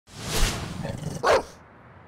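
Logo sound effect for a bulldog crest: a noisy swell, then a single loud dog bark about a second and a quarter in, fading out soon after.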